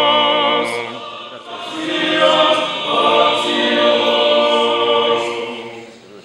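Orthodox church choir singing unaccompanied in sustained phrases, with a short break about a second in, and the singing dying away near the end.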